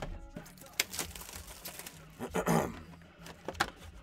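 Cardboard trading-card boxes being handled on a desk: a few light taps and knocks, with a louder rustle-scrape of cardboard about two and a half seconds in.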